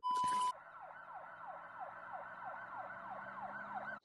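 A short burst of TV-static noise with a steady beep tone lasting about half a second, as a video glitch transition. Then a faint siren with quickly repeating falling sweeps, about three a second, over a low steady hum.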